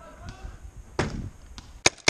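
Sharp cracks of paintball markers firing during play, one about a second in and a louder one near the end.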